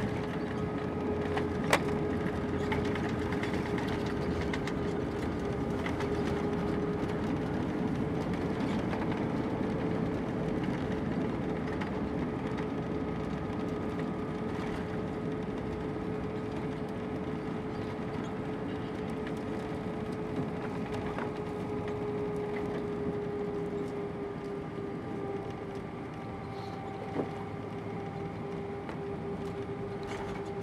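Cabin noise inside an Airbus A320 on its landing rollout: a sharp knock about two seconds in, then the steady drone and hum of the IAE V2500 engines over a rumble from the runway. The sound eases off gradually toward the end as the jet slows.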